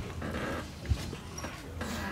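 Chalk scraping on a blackboard as a long line is drawn, with a short low thud about a second in.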